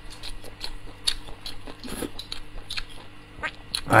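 Close-miked mouth sounds of a person chewing braised meat off the bone: irregular small smacks and clicks.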